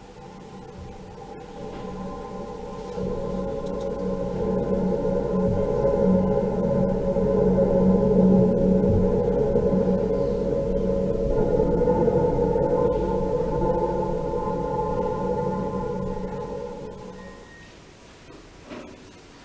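A recorded excerpt of slowly varying electronic music played over the hall's speakers: a drone of several held tones that swells up over the first eight seconds or so and fades out near the end. Higher tones join about eleven seconds in.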